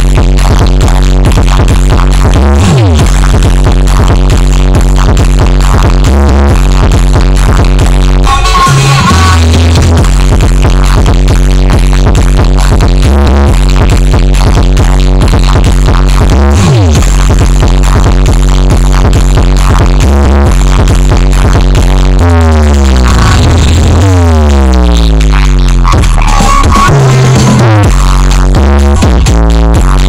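Electronic dance music played very loud through a large outdoor sound-system rig of about twenty subwoofers with line-array tops, during a sound check. The bass is heavy and pulsing, drops out briefly about eight seconds in, and a run of falling pitch sweeps comes about three-quarters of the way through.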